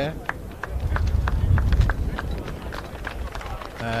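A quick run of light taps or clicks, about three to four a second, over a low rumble that swells about a second in.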